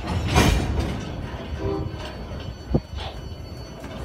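Railcars of a slow-moving freight train rolling past close by: a steady low rumble, with a loud burst of clatter about half a second in, a brief wheel squeal near the middle and a single sharp clank near the three-second mark.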